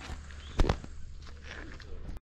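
Footsteps on gravel, with one louder thump a little over half a second in.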